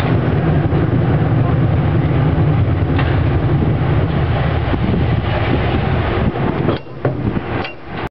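San Francisco cable car running along its track: a steady, loud low rumble from the car and its cable. There is a sharp click about three seconds in, and two more near the end, when the rumble falls away.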